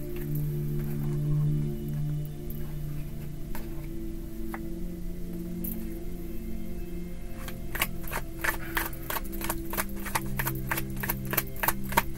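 Soft background music of long held tones that shift pitch every few seconds. From about halfway through, a tarot deck is shuffled in the hands, a quick run of card clicks at about four or five a second.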